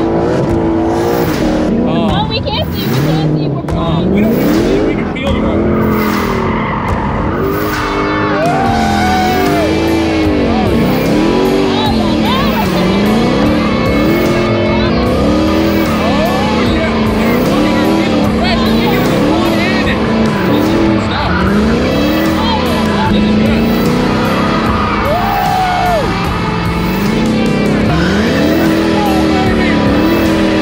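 Ford Mustang Shelby GT500's supercharged V8 revving up and down over and over while drifting, the pitch rising and falling about every one and a half to two seconds, with tyres squealing and skidding throughout.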